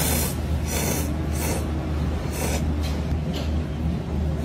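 Ramen noodles being slurped off chopsticks in a string of about six short slurps, over a steady low hum.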